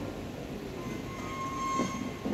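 Qur'an recitation through a hall's PA system: the reciter's voice holds one long, high, steady note that starts about a second in and swells before ending.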